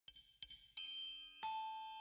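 Background music starts after a couple of soft clicks: a slow melody of single bell-like struck notes, about one every two-thirds of a second, each ringing on as it fades.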